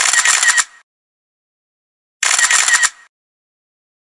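Camera shutter sound effect, twice: a short rattle of rapid clicks at the start and again about two seconds later, with silence between.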